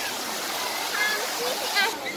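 Busy outdoor crowd ambience: scattered voices and children's calls over a steady rushing hiss, with a short high-pitched child's call near the end.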